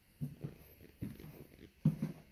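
Footsteps walking across the floor of a manufactured home, three dull low thumps at an even walking pace.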